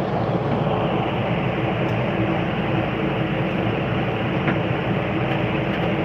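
Steady whir of the air-conditioning blower inside an enclosed Ferris wheel gondola, with a low hum underneath.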